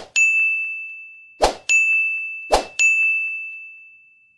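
Three bright notification-style ding sound effects, each set off by a short whoosh, as animated Like, Share and Comment buttons pop onto the screen. The dings come about a second or a second and a half apart, each ringing out and fading.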